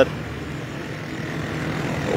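Motor vehicle traffic on the street: a steady engine and road drone that grows slowly louder.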